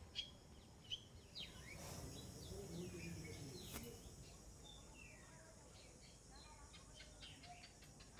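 Faint birds chirping: many short, high chirps that slide downward, scattered throughout, with a few soft clicks in the first second and a half.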